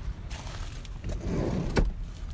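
Light handling clicks at the open door of a car, with a small click about a second in and one sharp click near the end, as someone leans into the driver's doorway.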